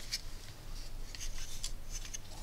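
Hands handling and turning over a small 3D-printed plastic panel with a circuit module fitted: soft rubbing with a few faint scattered clicks.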